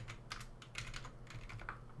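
Computer keyboard typing: a quick, irregular run of faint key clicks.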